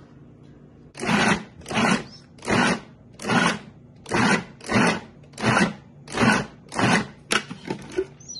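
Food processor pulsed about nine times in a steady run, each short burst less than a second after the last, blending soft simmered cauliflower into a mash. A sharp click comes near the end.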